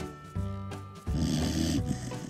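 A sleeping dog snoring, with one long snore about a second in, over background music.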